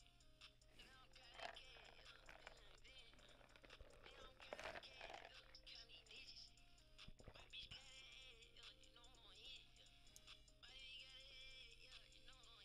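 Faint hip-hop beat playing in the background, with held synth notes that step in pitch, over a steady low hum.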